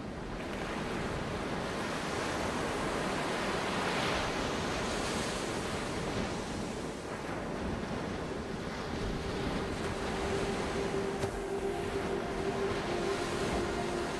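Ocean surf washing steadily, with a swell about four seconds in. A sustained synth pad tone fades in over it from about two-thirds of the way through.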